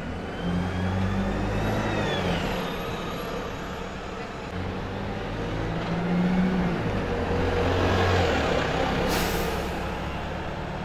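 Single-deck diesel midibus (Optare Solo SR) driving slowly round a corner and past at low speed, its engine note swelling twice. A short sharp hiss of air comes near the end.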